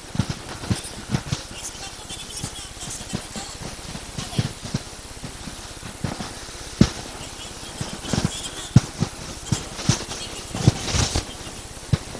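Blackboard being wiped clean with a duster: rubbing, with a string of irregular sharp knocks as the duster strikes the board.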